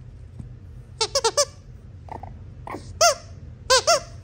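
A series of short, high-pitched squeaks: a quick run of four about a second in, then a few single ones, with the loudest near the end.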